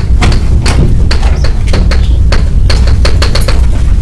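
Chalk writing on a blackboard: a quick, irregular run of sharp taps and short scratches as letters are formed, over a steady low hum.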